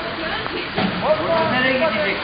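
Indistinct voices of people talking over a steady hiss of rain and water on a wet street.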